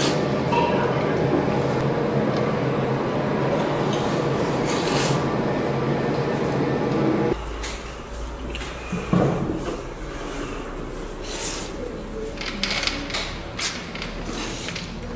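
A person slurping hot hand-pulled noodles from a bowl of beef noodle soup: several loud sucking slurps over a noisy background that drops away suddenly about seven seconds in, with more slurps near the end.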